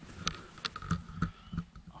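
Footsteps on rubble and dirt: about five steps spaced a third to half a second apart.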